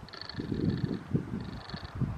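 A horse trotting on grass, giving soft, irregular low sounds of hooves and breath.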